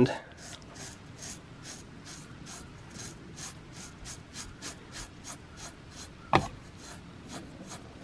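A sharpened butter knife scraping dry across the hair of a bare leg in short, quick shaving strokes, about three a second, each a light rasp as the edge cuts the hairs. One sharp click about six and a half seconds in.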